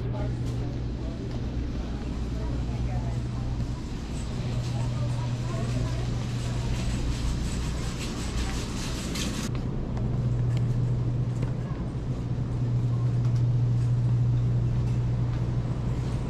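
Grocery store interior ambience: a steady low electrical hum throughout, with a hiss that cuts off suddenly about halfway through.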